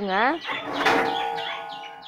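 A metal utensil clanks once about a second in and rings on with a steady tone for over a second. Small birds chirp in the background.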